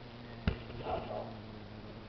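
A single light click about half a second in, over a faint, steady low hum.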